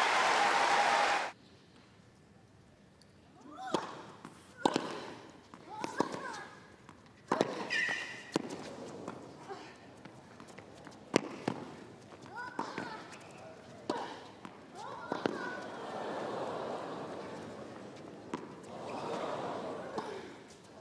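Crowd applause and cheering, cut off about a second in. Then a tennis rally on a hard court: sharp racket strikes and ball bounces, roughly one every second or so, over a faint crowd murmur that swells near the end.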